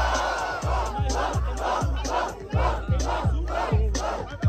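Crowd shouting and cheering over a hip-hop beat with a steady kick drum. A loud roar of voices at first gives way to rhythmic shouts in time with the beat.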